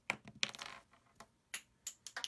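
Small craft supplies handled on a work table: a series of light clicks and taps, with a short scrape about half a second in.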